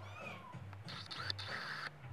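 A kitten gives a short, falling meow just after the start, over steady background music.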